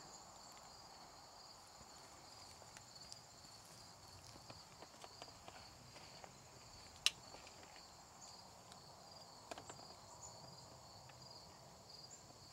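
Faint, steady high-pitched pulsing of chirping insects, with a few light handling clicks and one sharp click about seven seconds in.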